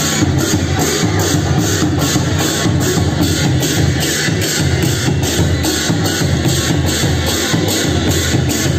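Background music with a steady electronic beat and heavy bass.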